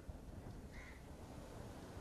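A single short bird call about three-quarters of a second in, over a steady low background rumble.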